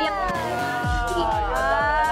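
A long drawn-out wailing voice that falls and then rises in pitch without a break, over background music with deep bass kicks.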